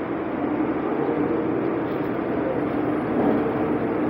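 Interior running noise of a 2020 Nova Bus LFS diesel city bus under way: a steady hum from the engine and drivetrain mixed with road noise.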